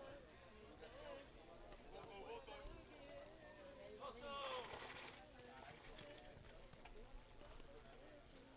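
Faint, distant voices of players and people at the pitch calling out, with a somewhat louder call about four seconds in, over a low background of room tone.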